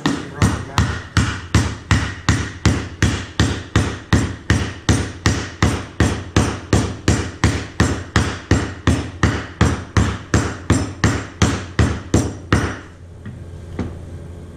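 A mallet knocking a wooden bowl blank down into a Baltic birch plywood fixture on a CNC router bed: a steady run of strikes, about three a second, that stops shortly before the end, once the piece is seated all the way down.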